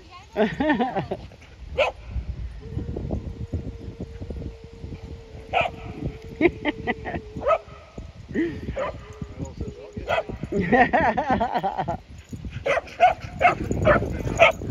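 Dogs at play barking now and then in short bursts, with a person laughing a little past the middle.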